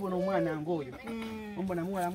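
A person's voice talking in long, drawn-out sounds, holding a steady pitch for stretches in the second half.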